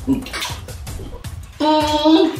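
Wet, close-up eating sounds of people eating with their hands: a run of lip smacks and chewing clicks. A short held voiced note, like an "mmm", comes near the end.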